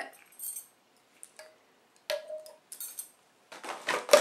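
A few scattered clinks and knocks of empty candle jars being handled and set down.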